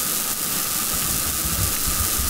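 Steady hiss of background noise on the recording, strongest in the high range, with faint low rumbles beneath and no speech.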